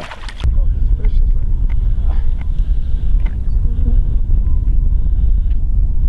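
Wind buffeting the microphone outdoors on open water: a loud, steady low rumble that starts suddenly about half a second in.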